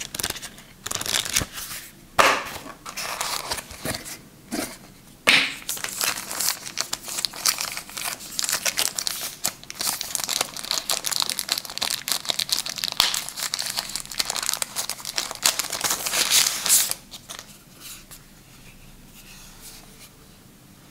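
Crinkling and rustling of a thin translucent protective wrap being handled and pulled off a small SSD enclosure, with a few separate rustles and knocks in the first few seconds. The crinkling dies away about three seconds before the end.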